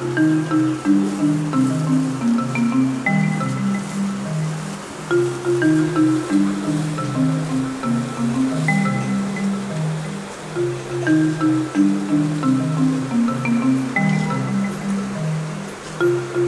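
Background music: a melody of short stepped notes, its phrase repeating about every five seconds.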